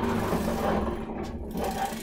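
A small electric motor running steadily, a low even hum with no change in speed.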